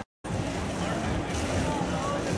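Busy street ambience: a steady low traffic rumble with scattered voices of passers-by. It starts after a brief moment of silence at the very start.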